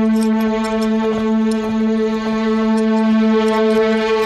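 Background drama score holding one long, steady low note, with the evenly spaced overtones of a single wind or brass instrument.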